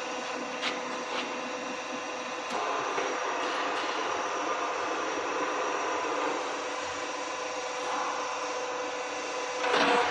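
Electric motors of a mobile concrete block-making machine running with a steady hum, with a few metallic clicks in the first seconds. The sound gets a little louder about two and a half seconds in, and there is a louder rattle near the end.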